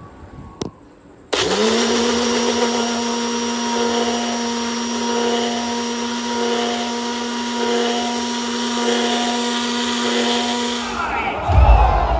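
A Prestige mixer grinder blending milk and chocolate biscuits. The motor starts about a second in, spins up almost at once to a steady whine, and runs evenly until it stops near the end, where a burst of crowd noise takes over.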